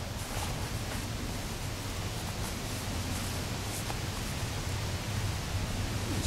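Steady hiss of outdoor background noise with a low rumble underneath, and faint rustles of trouser fabric as a pocket pouch is handled.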